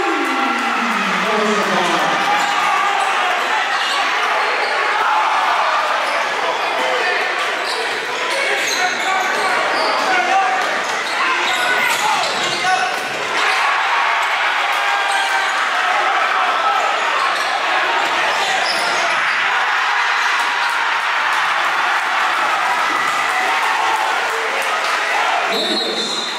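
Basketball game in a gymnasium: steady crowd chatter and calls from the stands and bench, with the ball bouncing on the hardwood floor as it is dribbled.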